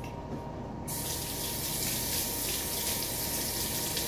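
A bathroom tap turned on about a second in, water then running steadily into the sink.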